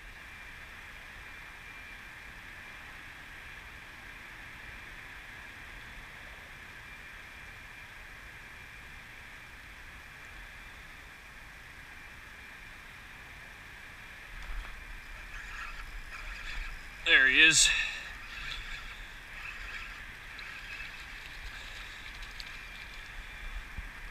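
Steady faint outdoor hum with a thin, steady high tone, then rustling and handling noise from about two-thirds of the way in. A short exclamation in a man's voice comes about 17 seconds in.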